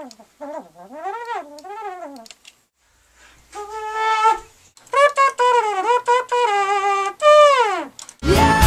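An unaccompanied wind instrument plays short melodic phrases, bending and sliding the pitch, and ends with a long downward slide.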